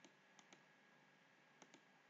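Near silence with a few faint computer mouse clicks: two about half a second in and two near the end.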